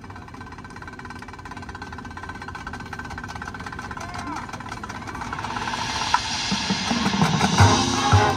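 Marching band in a soft passage of held tones. Then a hissing swell builds through the second half, and low drum hits begin in an even beat near the end.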